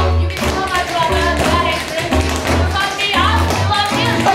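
Loud music: a song with a bass line that changes note every half second or so, a melody over it, and sharp percussive hits.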